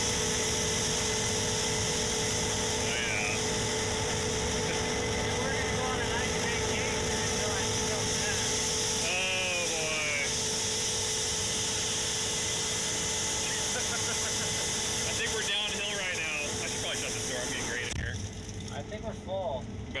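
Steady drone of a Case IH 8250 combine running and harvesting, heard inside its closed cab, with a few steady whining tones over a high hiss. Near the end the hiss cuts out and the drone gets quieter.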